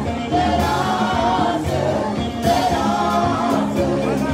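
Christian worship song: voices singing held, wavering lines over steady instrumental accompaniment.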